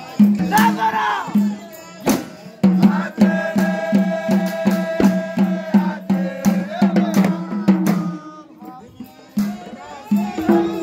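Moulidi devotional chant: a group of men's voices singing in unison over frame drums beating a steady pulse about two to three times a second, with sharp jingling strikes. The voices hold long notes through the middle, drop away briefly near the end, then come back in.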